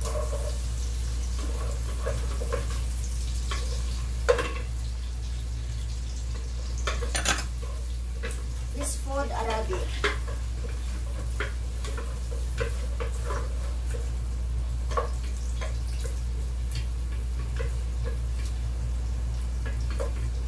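Wooden spoon stirring and scraping onion and garlic frying in oil in a metal pot, with scattered knocks against the pot, the loudest about four seconds in. A steady low hum runs underneath.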